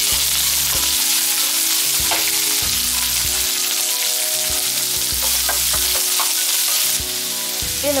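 Sliced onions sizzling in hot oil in a nonstick pan while a wooden spatula stirs them, with a few sharp scrapes and taps of the spatula. The sizzle eases slightly about seven seconds in.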